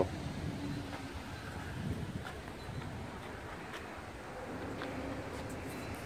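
Quiet outdoor background noise with a faint steady hum and a few light ticks. No engine is running: the scooter has been switched off.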